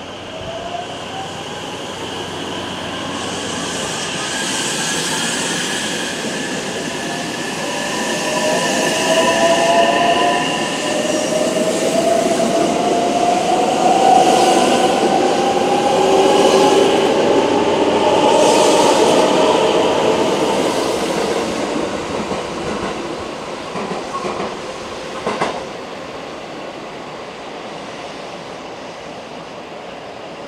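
Electric multiple-unit train pulling away and accelerating past, its traction-motor whine rising steadily in pitch over rolling and wheel noise. It grows loudest in the middle, then fades as the train draws away, with a sharp click near the end.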